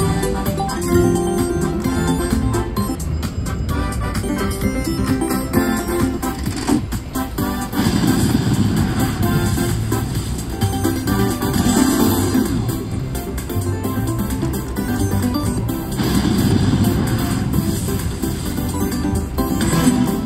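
Slot machine bonus-round music from the machine's speakers during free spins, swelling about every four seconds as each spin plays, with short clicks and jingles from the reels.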